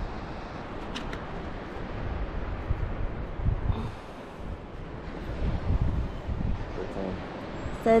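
Wind buffeting the camera microphone in irregular low gusts over a steady hiss of surf, with a faint voice shortly before the end.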